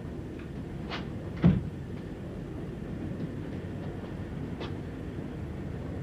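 Railway carriage rumbling along, heard from inside, with a few clicks and one heavy thump about a second and a half in from a compartment door being worked.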